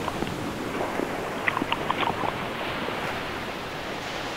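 Sea water and surf washing steadily, with a few faint ticks of water about halfway through.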